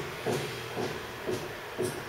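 Faint handling of a cardboard phone box: soft rubbing and a few light knocks as the fitted lid is worked loose.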